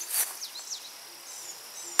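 Rural outdoor ambience: a few short, high bird chirps over a faint, steady insect buzz, with a brief soft rustle just after the start.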